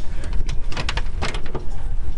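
Steady low rumble, with a run of sharp knocks and clicks about a second in as boots and hands meet the jet's metal boarding ladder.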